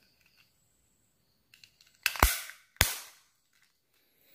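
Plastic case of a quartz clock movement being snapped shut: two sharp clicks about half a second apart, a little after halfway, with a few faint plastic ticks just before them.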